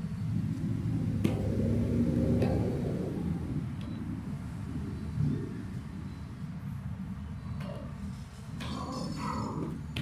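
A steady low outdoor rumble, with a few light clicks of plastic draughts pieces being set down or picked up on a vinyl board, the sharpest about a second in and another about two and a half seconds in.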